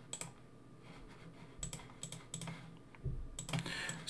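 Faint, scattered clicks of a computer mouse and keyboard in use, a few spread through the seconds with a small cluster near the end.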